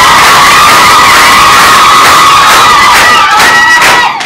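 A crowd cheering and shouting loudly, with high, wavering held calls rising above the din.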